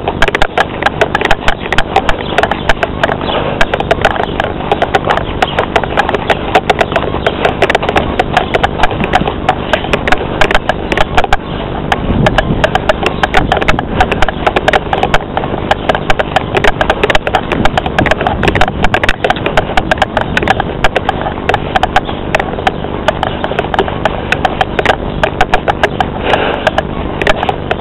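Dense, continuous crackling and knocking, many small clicks a second, loud throughout: handling noise from a camera carried by hand while walking.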